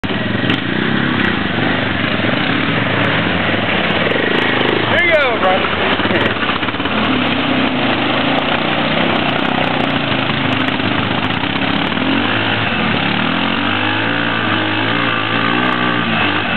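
ATV engine running under heavy throttle as the quad churns through a mudhole and its wheels spin in the mud, stuck on the exit. The engine pitch rises and falls near the end, and a brief high sweeping sound cuts through about five seconds in.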